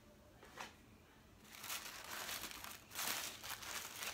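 Tissue paper crinkling and rustling as it is lifted and unfolded by hand, in uneven bursts from about a second and a half in, after a light tap about half a second in.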